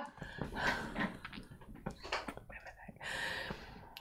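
A woman's quiet breathing and faint, half-voiced murmuring, with a longer breathy exhale about three seconds in.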